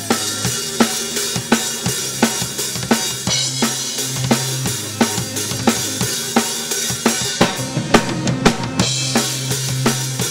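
Live band music from a drum kit and a Roland keyboard: the drums keep a steady beat of bass drum and snare over held low keyboard notes. A quick run of closely spaced drum hits comes near the end before the beat picks up again.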